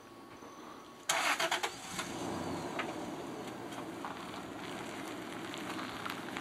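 Car engine started about a second in, with a short loud burst of cranking, then running steadily.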